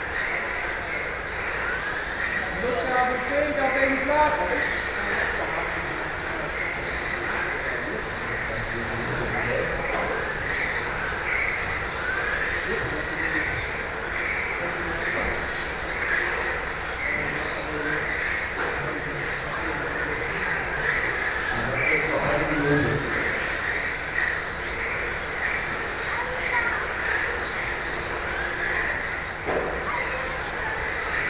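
Several 1:10 electric RC touring cars with 17.5-turn brushless motors racing together. Their motors give repeated high whines that rise as the cars accelerate out of the corners, about one every second or so, over a steady hall noise.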